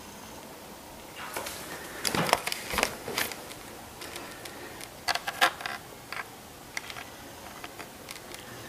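Red fox feeding and shifting about in a wire dog crate: scattered light clicks and clatters from the crate and its food bowls, coming in small clusters every second or so.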